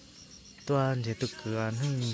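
A man's voice in long, drawn-out, wavering syllables, setting in about two thirds of a second in. Before it come faint, high, evenly spaced insect chirps.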